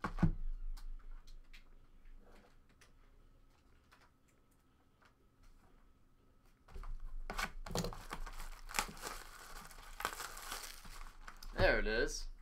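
Plastic shrink wrap being torn and crinkled off a cardboard trading-card box, starting about seven seconds in after the box is knocked down onto the table at the start.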